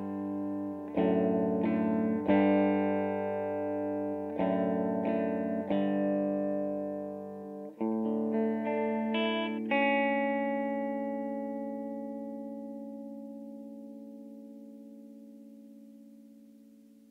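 The end of a song: guitar chords struck one after another, then a final chord about ten seconds in that rings on and slowly fades away.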